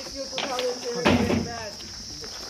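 A steady, high insect drone, typical of crickets, runs under people talking, with a brief noisy burst about a second in.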